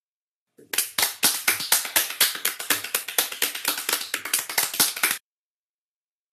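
Hand clapping: a burst of quick, irregular claps, several a second, beginning just after half a second in and stopping abruptly near the end.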